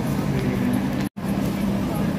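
Indoor shopping-mall ambience: indistinct voices of passing shoppers over a steady low hum. The sound cuts out completely for a moment about a second in, at an edit.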